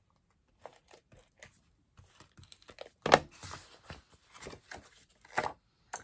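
A handheld tape runner laying adhesive onto a cardstock panel in short rasping strokes, among small clicks of paper being handled. The loudest stroke comes about three seconds in.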